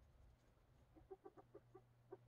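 Faint animal calls: a quick run of about six short, pitched notes, then one more just after.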